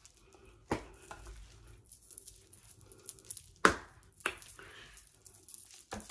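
Faint rustling with a few sharp knocks, the loudest about three and a half seconds in: handling noise in a small quiet room.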